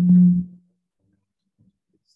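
A steady, low, constant-pitch tone: audio feedback on a video call, traced to someone's open microphone. It dies away about half a second in, leaving near silence.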